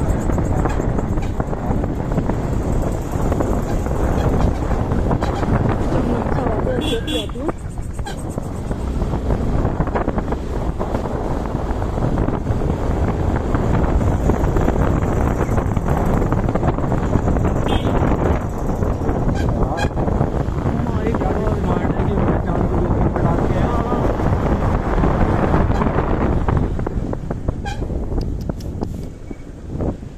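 Motorcycle on the move, heard from the rider's position: engine and road rumble under heavy wind noise on the microphone. A brief higher sound about seven seconds in, and the noise drops off near the end.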